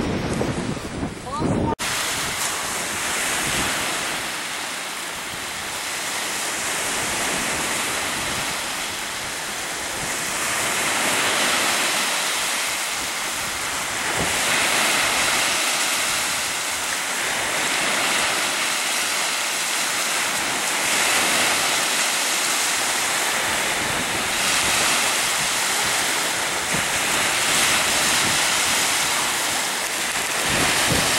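Waves washing in as a steady hiss of surf that swells and eases every few seconds. Wind buffets the microphone in the first couple of seconds, before an abrupt change.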